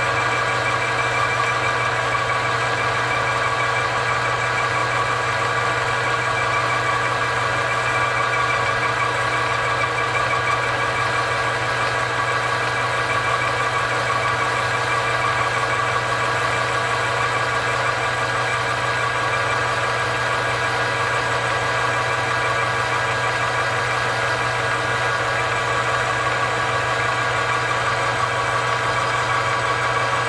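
Manual lathe running at a steady speed, with a constant low hum and a steady higher whine from the spindle drive, while a high-speed steel tool bit turns the spinning workpiece.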